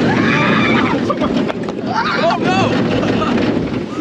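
Wind rushing over the microphone and the rumble of a roller coaster train in motion, with riders' voices crying out twice, near the start and about two seconds in.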